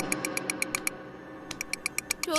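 Light, rapid ticking from a soundtrack sound effect, about nine even ticks a second. It breaks off a little under a second in and resumes near the end.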